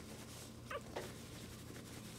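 A puppy gives one brief, high squeaky yelp during rough play, followed just after by a short sharp sound.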